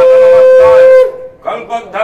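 Conch shell (shankha) blown in a long, steady, loud note that breaks off about a second in, followed by a couple of short weaker blasts near the end.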